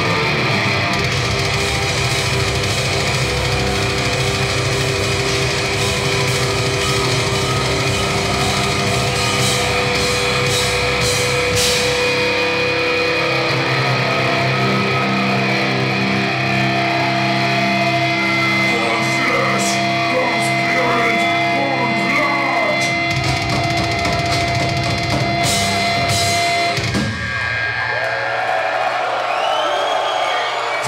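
Blackened death metal band playing live through a club PA: distorted guitars, bass and drums, with long held notes over the closing stretch. The music cuts off about three seconds before the end, leaving crowd shouts and noise.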